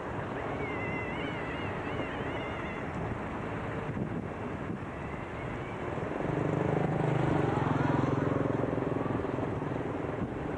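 Outdoor ambience with wind noise on the microphone. A thin wavering high whistle sounds in the first few seconds, and a steady motor hum swells up about six seconds in and holds for a few seconds.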